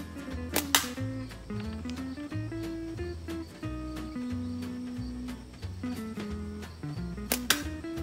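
Background music with a plucked guitar melody over a steady bass. Twice, about a second in and again near the end, a Bushy Beaver Newt slingshot fires: a sharp snap of the released bands followed almost at once by the shot striking a hanging tin can.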